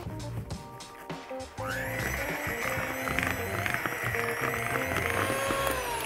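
Electric hand mixer starting up about a second and a half in, its motor whining up to speed and then running steadily as its beaters cream butter, eggs and sugar in a bowl. Its pitch drops slightly near the end.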